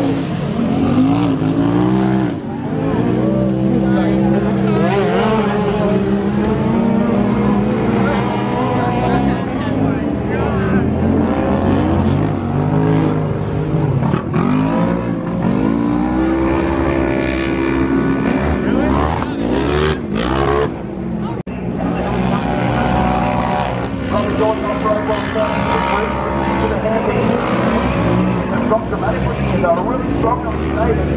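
Polaris RZR side-by-side race car's engine revving hard and falling off again and again as it races round a dirt track, its pitch sweeping up and down with the throttle.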